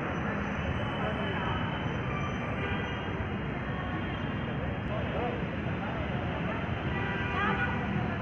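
Steady outdoor background din, with faint voices of people talking at a distance now and then.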